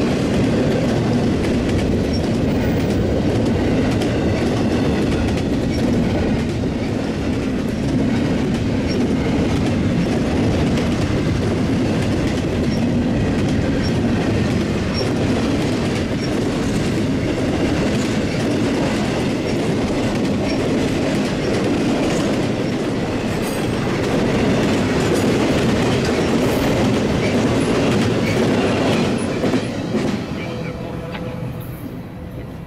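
BNSF intermodal freight train rolling past at speed: a steady, loud rumble of steel wheels on rail from double-stack container well cars and trailer-carrying flatcars. The sound drops off sharply just before the end.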